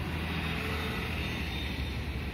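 Street traffic with a city bus passing close by: a steady low engine rumble over road noise.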